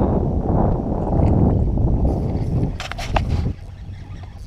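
Wind rumbling on an action camera's microphone, with a few short sharp clicks about three seconds in before the rumble drops away suddenly.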